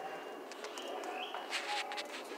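Birds calling in the trees, with a few crunching footsteps on dry, needle-strewn ground near the end.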